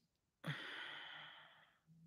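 A man's sigh: one breathy exhale about half a second in, fading away over about a second.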